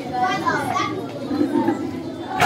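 Indistinct chatter of children's voices in a large room.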